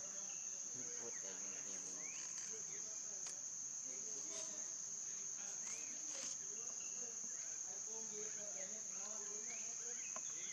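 A chorus of insects keeps up a steady, high-pitched drone, with a few faint short chirps scattered over it.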